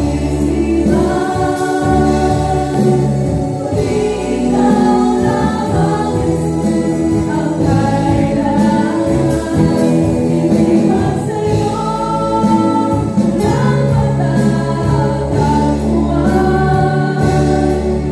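Women singing together into microphones with a live band of acoustic guitar, drum kit, keyboard and electric bass, the voices holding long notes over a steady bass line.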